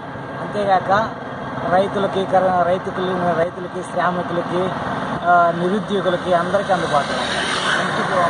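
A man speaking in Telugu, with road traffic behind him; a vehicle passes close by near the end.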